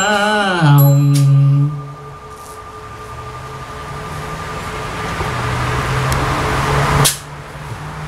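Buddhist monks chanting a Vietnamese-Buddhist mantra, holding its last long syllable, with a small bell ringing and a few sharp strikes at the start; the chant ends before two seconds in. A steady noise then swells slowly until a sharp click about seven seconds in.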